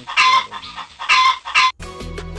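Two short, loud animal calls, about a second apart, with music starting near the end.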